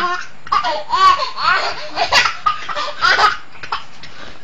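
A toddler laughing hard, in several bursts of high-pitched belly laughter that die down about three and a half seconds in.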